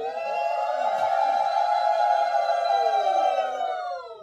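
Conch shell (shankha) blown in one long, steady note that sags in pitch as it dies away near the end, with a fainter, lower note sliding down beneath it.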